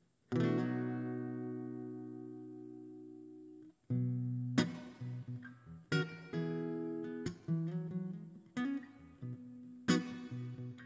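Steel-string acoustic guitar: one strummed chord about a quarter second in, left to ring and slowly fade for over three seconds before it is damped, then a rhythmic pattern of strummed and picked chords starts up as the song's intro.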